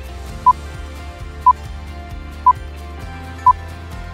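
Countdown timer beeping four times, one short identical beep each second, over background music: it counts down the last seconds of an exercise interval.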